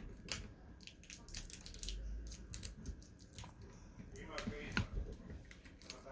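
Irregular sharp clicks and taps, with a faint muffled voice briefly about four to five seconds in.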